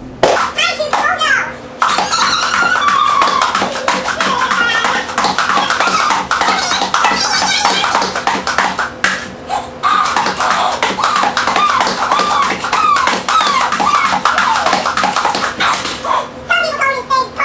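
High-pitched, unintelligible children's voices chattering almost continuously, with many quick clicks and a faint steady hum underneath.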